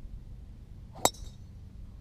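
A golf club strikes a golf ball once, about a second in: a single sharp click with a brief ringing tail.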